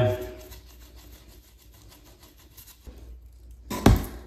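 Primer dauber wiping purple primer around the outside of a PVC pipe: a faint, quick rubbing and scraping. Near the end there is a single sharp knock.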